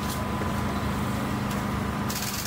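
Steady low machine hum with a thin, steady high tone above it.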